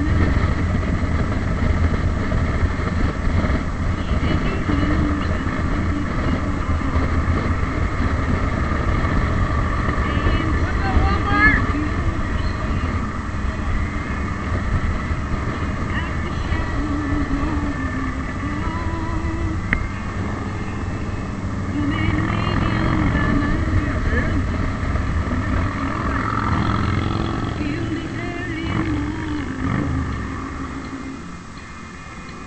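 Ride noise from a motorcycle at road speed: the engine running under a steady low rush of wind and road noise.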